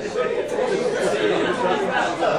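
Overlapping chatter of several voices in a large room between tunes, with no music playing.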